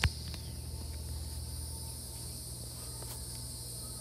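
Steady high-pitched chirring of crickets behind a low hum, with a single short click at the very start.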